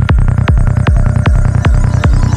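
Electronic dance track at 154 bpm: a steady four-on-the-floor kick drum, about two and a half beats a second, with a rolling bassline pulsing between the kicks.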